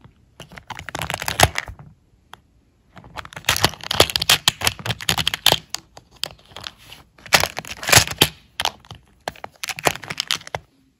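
Clear plastic clicking and rattling as the small hinged lids of a compartment organizer box are flipped open and snapped against the plastic with long fingernails. The clicks come in several rapid bursts with short pauses between them.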